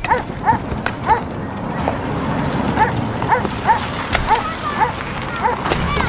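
A dog barking repeatedly, about a dozen short, fairly high-pitched barks, over a steady low rumble.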